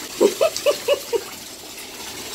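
A husky lapping water in a bathtub, about five quick plopping laps in the first second or so, over the steady rush of the running bathtub tap.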